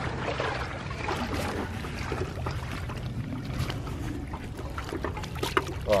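Steady wind rumble on the microphone outdoors by the water, with faint scattered clicks and trickles of water around the wet fish cradle.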